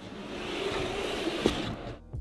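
Random orbit sander running steadily against plywood French cleat panels, sanding off mold staining, fading out near the end.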